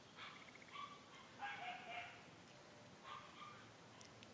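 Faint, short high-pitched calls from long-tailed macaques, four in all, the loudest about a second and a half in and falling slightly in pitch.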